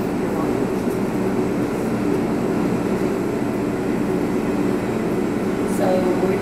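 A steady low mechanical hum with no breaks or changes, under faint indistinct voices.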